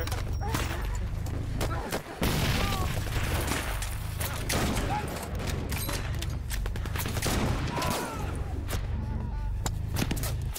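Film battle sound of a firefight: rapid rifle shots crack throughout. About two seconds in, a short drop is followed by a sudden explosion. A steady low drone runs underneath.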